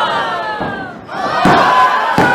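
Wrestling crowd yelling in reaction to the action in the ring, the voices sliding down in pitch, then swelling again with a sharp thud about a second and a half in.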